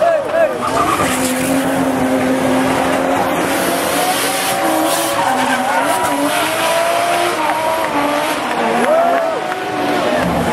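Drift car engine revving hard, its pitch rising and falling with short quick revs near the start, while the rear tyres screech and spin in a smoky burnout.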